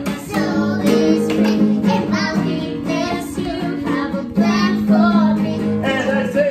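A child and adults singing a worship song together, accompanied by a strummed acoustic guitar.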